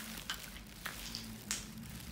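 Light handling noise: a few faint, separate clicks and soft rustles, over a steady low hum.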